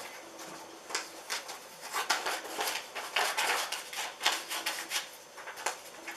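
Scissors cutting a sheet of paper into a rectangle: a run of irregular snips, with the paper rustling in the hands.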